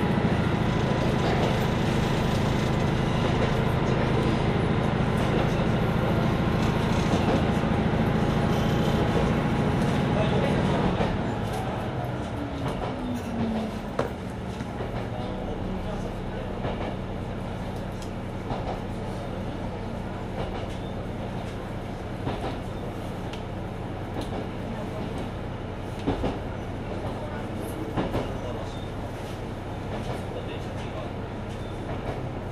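Mizushima Rinkai Railway MRT300 diesel railcar running with its engine under power; about eleven seconds in the throttle is shut and the engine note falls away. The railcar then coasts with steady running noise and occasional sharp rail-joint clicks.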